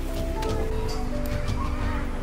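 Background music with held, sustained notes.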